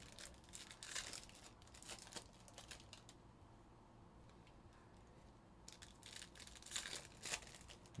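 Faint crinkling and tearing of foil Panini Prizm baseball card pack wrappers as cards are handled, in short rustling bursts through the first three seconds and again near the end, with a quieter stretch between.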